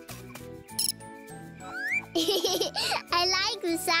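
A cartoon cricket chirping: a quick run of high, rapidly repeated chirps about halfway through, over light children's music.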